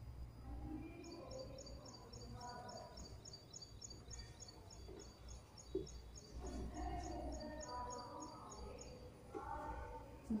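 A small bird chirping in a rapid, evenly spaced series of high chirps, about four a second, faint under distant voices and a low hum.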